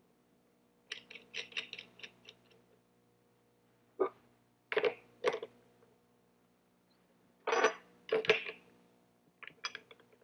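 Steel router bit parts (cutters, spacers, bearing and nut) clinking and clicking as they are stacked on the arbor, followed by a socket wrench fitted onto the arbor nut. A quick run of small clicks about a second in, a few sharp clinks around the middle, and two longer metal rattles later on.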